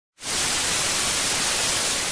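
Television static: a steady hiss of white noise that starts a moment in.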